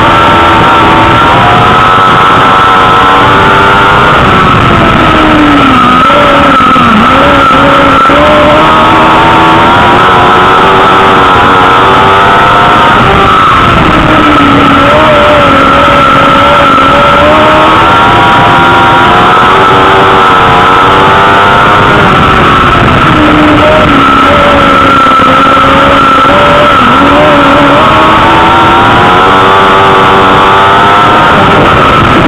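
Dwarf race car's motorcycle engine heard from inside the car at racing speed, its note rising and falling in repeated cycles every several seconds as it laps the track. It is loud, with a steady high whine running over it.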